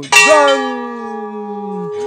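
A large brass temple bell struck once just after the start, then ringing on with several steady overtones that slowly fade.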